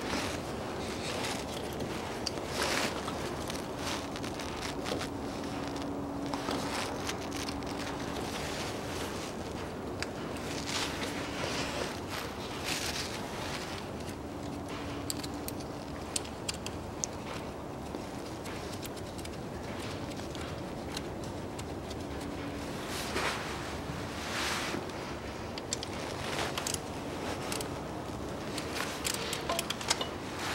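Hands working in a car's engine bay: jacket sleeves rustling, with scattered light clicks and scrapes of metal parts being handled. A faint low hum comes and goes in the background.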